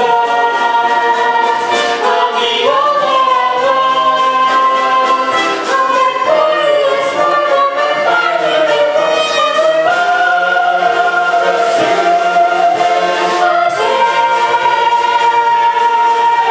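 A chorus of voices singing together over instrumental accompaniment, holding long sustained notes that move to new pitches every few seconds.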